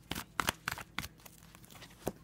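A deck of oracle cards being shuffled by hand: a quick run of sharp card flicks and riffles in the first second, thinning to a few single flicks after.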